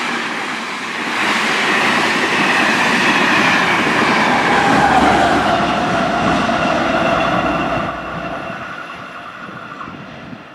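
Irish Rail Mk4 Intercity passenger train running through at speed, its coaches and wheels rushing past, with the 201 class diesel locomotive at the rear going by about five seconds in, its pitch falling as it passes. The sound then fades as the train pulls away.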